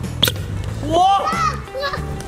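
Stomp-rocket launcher stomped on, a single sharp pop of air about a quarter-second in that sends the toy chicken up, followed by excited shouts of "whoa" over background music.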